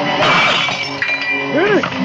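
Film soundtrack: a crash of something breaking just after the start, over background music, then a woman's short rising-and-falling cry about one and a half seconds in.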